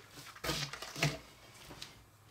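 Short wet mouth sounds of licking the hard candy stick before dipping it in the green apple sugar powder, with two brief smacks about half a second and a second in and a faint one near the end.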